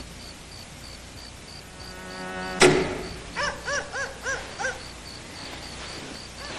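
Crickets chirping steadily in the night background. A low buzz builds and ends in a sudden thump about two and a half seconds in, followed by a quick run of about five short, high calls that rise and fall.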